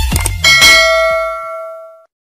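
Bell-ring sound effect for a notification-bell click: a single bright ding about half a second in that rings on in several steady tones and fades away, over the last low thumps of an electronic beat.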